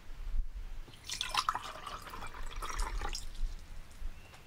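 Liquid poured and splashing into a glass for about two seconds, starting about a second in.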